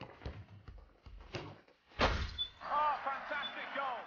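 Football played on a hard tiled floor: quick footsteps and ball touches, then a hard kick or thud about halfway through. A run of short, high squeaks and shouts follows.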